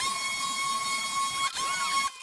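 Milwaukee polisher running with a polishing pad on car paint, sped up to time-lapse speed so that it comes out as a high, steady whine. There is a short break about one and a half seconds in.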